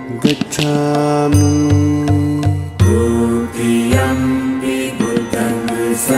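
Buddhist devotional chant sung in long held notes over instrumental music, with a few low beats in the first half.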